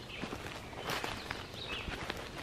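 Footsteps in dry leaf litter: an irregular scatter of soft rustles and crackles as a walker moves through the woods.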